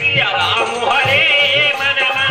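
A male folk singer singing long, wavering, ornamented notes through a microphone and PA, over hand-drum accompaniment.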